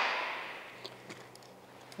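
Faint small clicks and rustles of hands handling a camcorder and tripod mounting plate, a few light ticks about a second in and near the end, over quiet room tone.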